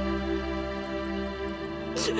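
Soft, sad background score of long sustained chords, shifting to a lower chord near the end.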